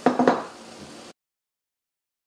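A brief clatter right at the start, then faint room noise, and the sound cuts off to dead silence about a second in.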